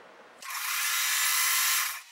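Electric sewing machine running at a steady speed, stitching a short seam joining two quilt squares; it starts about half a second in and stops just before the end.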